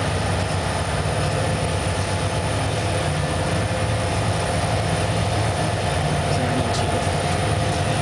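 Freight train rolling past close by: the steady low drone of a KCS SD70MAC diesel-electric locomotive running in the consist, over the continuous rumble of wheels on rail.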